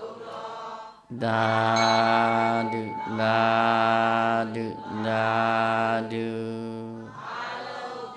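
Buddhist chanting by a low male voice: three long notes, each held on a steady pitch with a short break between them, and softer chanting just before and after.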